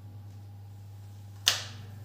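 Guitar amplifier humming steadily with the electric guitar plugged in, and one sharp loud switch click through the amp about one and a half seconds in, as the amp and pickup settings are changed.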